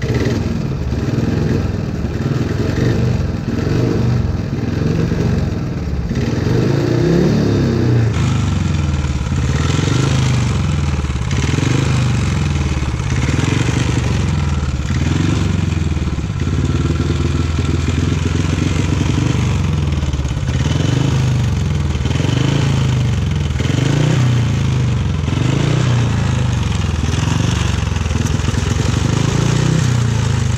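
Speedway bike's 500cc single-cylinder engine running on the stand. It runs fairly evenly at first, then from about eight seconds in it is blipped repeatedly, the revs rising and falling every second or two.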